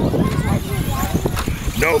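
Radio-controlled cars racing over a dirt track, with a steady rumble and irregular knocks, under background voices.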